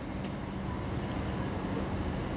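Steady low background rumble and hiss with a faint hum, like a ventilation fan or machine running, with a couple of faint light clicks.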